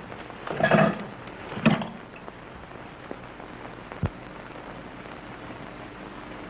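A few sudden knocks and thumps, with a short rustling burst just before a second in, over the steady hiss of an old film soundtrack.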